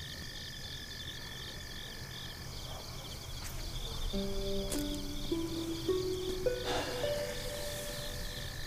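Night chorus of insects, a steady pulsing high chirping. About four seconds in, soft background music enters with slow, held notes.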